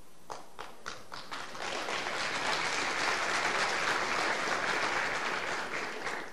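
Audience applause: a few scattered claps at first, swelling within a second or two into full, steady clapping from the crowd, then dying away near the end.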